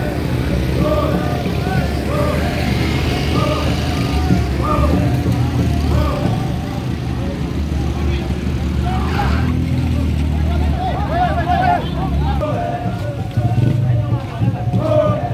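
A slow-moving motor vehicle's engine rumbling low and steadily, with a crowd of marchers' voices calling out in a repeating rhythm over it; the engine sound drops away near the end and the voices become more prominent.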